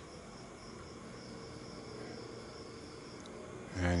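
Night insects trilling steadily in a high-pitched continuous chorus.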